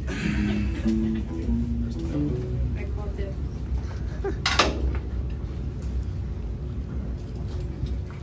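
A few short low instrument notes picked out on stage between songs, stepping up and down in pitch over the first three seconds, over a steady amplifier hum; a brief voice sounds about halfway through.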